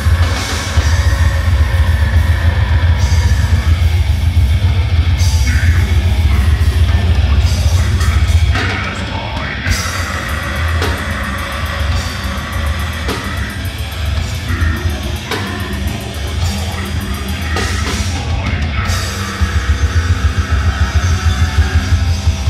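A heavy metal band playing live and loud: distorted electric guitar over a drum kit. The heavy, dense low end eases off about eight seconds in for a lighter passage, then comes back near the end.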